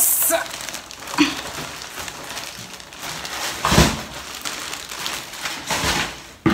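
Handling noises close to the microphone: rustling and crinkling with a few knocks, the loudest a thump a little before four seconds in.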